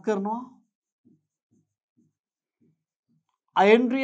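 Marker pen writing on a whiteboard: a few faint, short strokes about half a second apart. A man's voice is heard at the start and again near the end.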